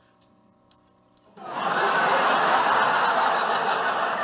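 A sitcom studio audience laughing. The laughter starts about a second and a half in, after a near-silent pause with a faint hum, and carries on loud and steady.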